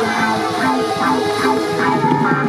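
A street band playing live: drum kit, electric guitars, keyboard and trumpet together in a steady rhythm.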